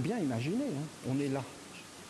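A man's voice making a wordless, buzzy hum whose pitch swoops up and down twice, then a short low held hum.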